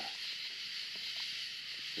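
Two nine-banded armadillos scuffling on loose gravel: a few faint scattered scrapes and ticks of stones being scratched and kicked. Under them runs a steady high hiss of night insects.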